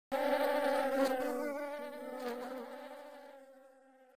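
Sound effect of flies buzzing: a wavering buzz that starts at once and fades out over about three seconds.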